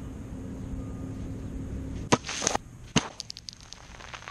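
A plastic Diet Coke-and-Mentos bottle rocket coming down: a sharp knock about two seconds in with a brief hissing rush, then a second knock about a second later and a quick rattle of small bounces on the concrete.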